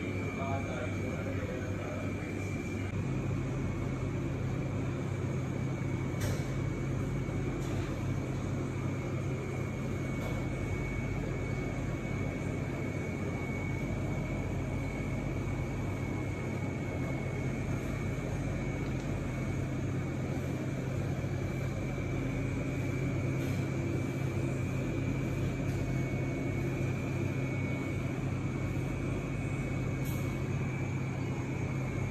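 Steady machine hum with a thin high whine; the low hum grows louder about three seconds in, and a single click comes about six seconds in.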